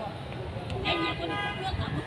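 A lull between phrases of sli folk singing: low voices talking, with street traffic and a possible car horn in the background.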